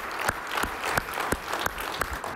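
Audience applause, with sharper single hand claps standing out about three times a second, from a man clapping close to the microphone.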